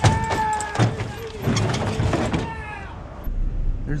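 A child's bike trailer clattering and scraping as it is shoved into a vehicle's cargo area, with a drawn-out squeak over the first two seconds or so; the loudest knock comes right at the start.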